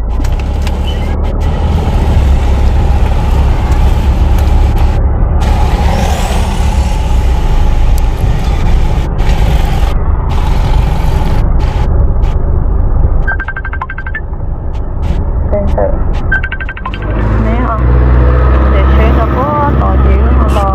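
Road noise inside a moving car: a steady low rumble of engine and tyres with a hiss over it, changing after a brief dip about three-quarters of the way in.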